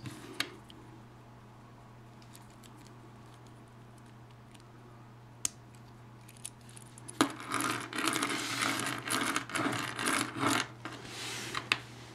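Small plastic toy parts being handled and pressed together: a few isolated clicks at first, then from about seven seconds in a busy stretch of clicking, scraping and rattling.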